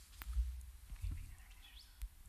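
Handheld microphone being handled as it is passed to the next questioner: low irregular rumble and thumps, a sharp click just after the start, and a faint short rising squeak near the end.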